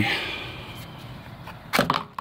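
Pistol being tugged in a molded polymer holster: low handling rustle, then a quick cluster of sharp plastic clacks near the end as the gun catches on the holster's retention.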